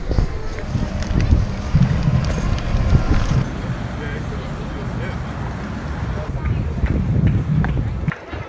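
Wind buffeting a handheld camera's microphone as a low, uneven rumble, with handling knocks and footsteps as it is carried up stone steps.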